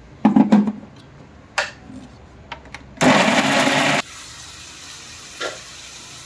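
An Indian mixer grinder: the steel jar clicks and knocks into place on its base, then the motor runs in one short pulse of about a second, blending tomatoes, and cuts off suddenly. After it, a faint steady sizzle of onions frying in a pan.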